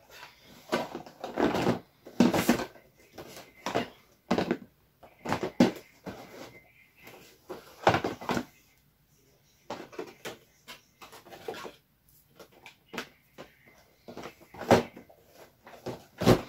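Cardboard advent calendar being handled: irregular knocks, taps and rustles of cardboard as it is picked up and held open.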